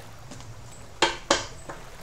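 Tarot cards being handled on a table: two short, sharp clicks about a third of a second apart, a second in.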